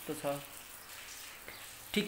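A brief spoken syllable at the start, then a steady hiss with a light click about one and a half seconds in.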